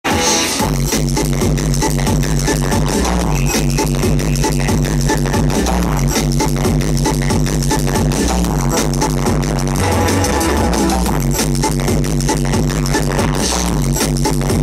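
Loud drum and bass DJ set playing over a festival sound system, heard from among the crowd: a fast beat over a repeating heavy bass line, which changes about ten seconds in.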